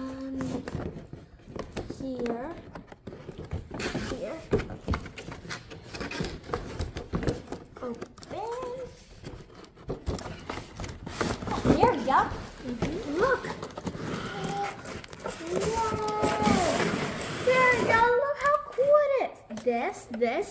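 Voices talking and exclaiming over the scraping and rustling of a cardboard box being pried open by hand, its flaps and tabs pulled loose.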